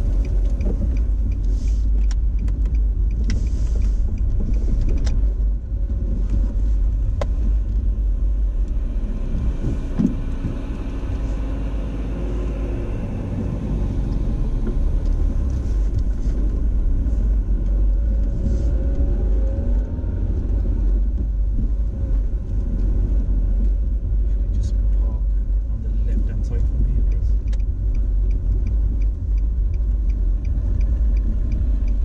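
Car interior while driving slowly: steady low rumble of the engine and tyres on the road.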